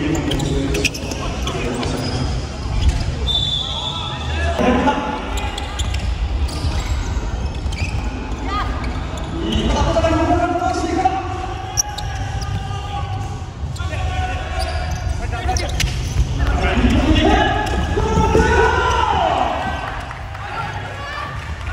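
Futsal match play on an indoor wooden court: repeated ball kicks and thuds and players' footfalls, with shouted calls from players and spectators now and then, especially in the second half. Everything echoes in a large sports hall.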